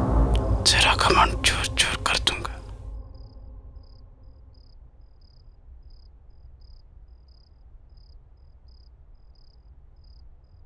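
Breathy whispering over a deep low drone for the first three seconds, then fading out. A faint cricket chirps steadily after that, about three chirps a second, over a low hum.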